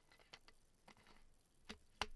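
Faint, light taps of fingertips on the cap and neck of a plastic sparkling-water bottle: three sharp ticks in two seconds, the last the loudest.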